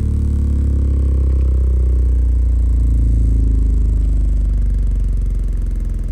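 Nemesis Audio NA-8T subwoofer in free air playing a loud, steady deep bass tone from a test signal, held up off its wooden base so the wood does not buzz; the signal is clean, not clipping.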